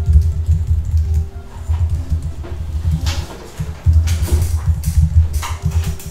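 Typing on a computer keyboard close to the microphone, heard as fast, irregular dull thumps of the keys with a few sharper clicks.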